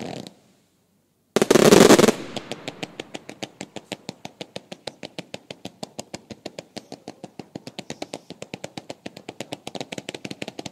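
Firework cakes firing in a finale: a short burst, a brief pause, then a loud dense blast about a second and a half in, followed by a rapid, even string of sharp reports, about eight a second, as the cakes send up fans of comets.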